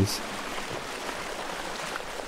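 Small creek near its headwaters tumbling over rock: a steady rush of running water.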